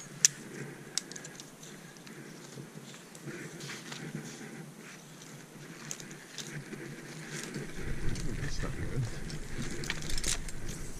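Climbing gear being unclipped and handled: a sharp metallic click of a carabiner near the start and another about a second in, then scattered small clinks and rustling of rope and hardware. A low rumble comes in near the end.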